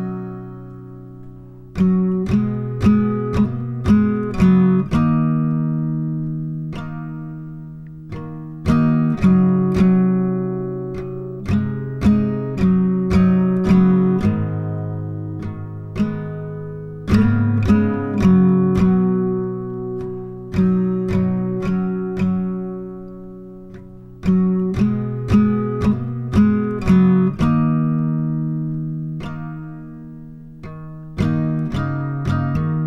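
Acoustic guitar picked slowly in an instrumental passage of an indie folk song, small clusters of plucked notes each left to ring out and fade before the next.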